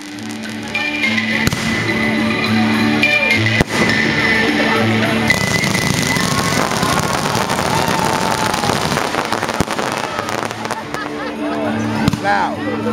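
A hip-hop beat with a repeating bass line plays throughout, and from about five seconds in the dense crackling and popping of a fireworks display runs under it for several seconds, with a single sharp bang a little earlier.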